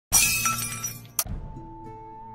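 Sound design for an animated intro: a sudden bright crash like breaking glass at the start that fades over about a second, a sharp glitch click just after a second in, then a steady synthesized tone held over a low drone.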